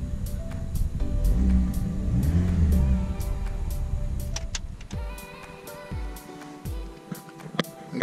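Background music with a steady beat over a Mini's petrol engine running, misfiring on cylinder 4 from a faulty injector. The revs rise and fall about two seconds in, and the engine sound fades out a little after the halfway point, leaving the music.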